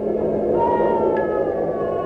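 A drawn-out, distorted animal cry like a slowed elephant trumpeting, its pitch gliding down and wavering, over low sustained music. It is the film's sound effect for the elephant said to have struck down Merrick's mother.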